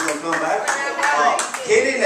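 Audience clapping mixed with voices, just after the live band has stopped playing a song.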